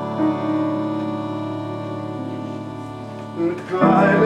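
Upright piano playing slow, held chords, with a louder chord struck near the end.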